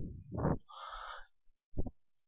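A man's quiet hesitation sounds between words: a short voiced "uh", a soft breath, then a brief low hum near the end.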